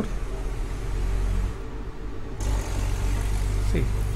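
Steady low rumble with a faint constant hum. About two and a half seconds in, the rumble grows louder and a hiss joins it.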